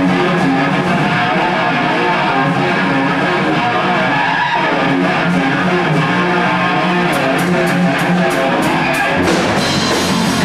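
Live rock band starting its set: a loud electric guitar riff, with drum hits joining in from about seven seconds in.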